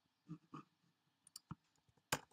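Near silence, with two short soft sounds about a third of a second in and two faint sharp clicks of computer input about a second and a half in.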